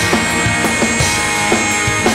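Live rock band playing: distorted electric guitars over a steady drum-kit beat.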